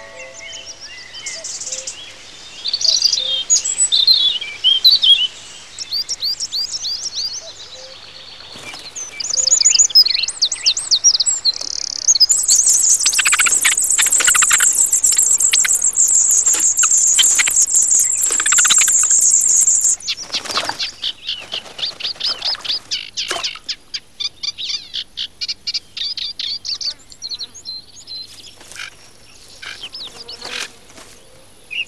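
Songbirds singing and calling in a quick succession of varied high phrases. From about twelve seconds in, a loud, continuous high-pitched chorus of nestlings begging starts and breaks off about eight seconds later, then rapid repeated short chirps follow.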